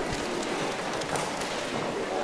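Steady background hubbub of a large hall full of people, with no voice standing out.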